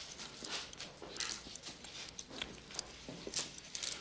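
Handcuffs being unlocked and taken off: a run of irregular light clicks and knocks, with shuffling movement.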